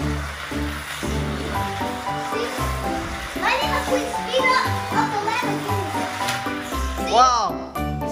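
Background music with steady, blocky bass and mid-range notes, over which a child's voice calls out wordlessly, once a few seconds in and again near the end.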